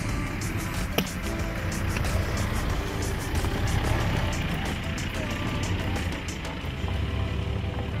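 Mitsubishi Pajero's engine running with a low rumble as it drives slowly over a gravel off-road track, getting louder toward the middle, with background music over it and scattered clicks, one sharper about a second in.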